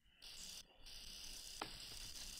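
Faint scratching of a pencil drawing lines on paper, with a short break about half a second in and a light click later.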